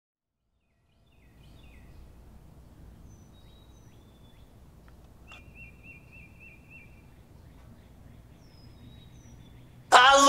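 Outdoor ambience after a second of silence: a faint low rumble with scattered bird chirps, a faint click and a short bird trill about halfway through. Acoustic guitar music cuts in suddenly at the very end.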